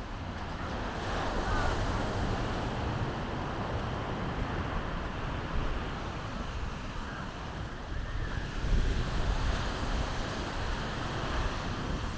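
Ocean surf washing below the cliffs, with wind rumbling on the microphone; the sound swells and eases without a break.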